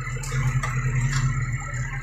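Tractor engine running steadily, heard from inside the cab as it drives through the forest, with a few light clicks and rattles from the cab.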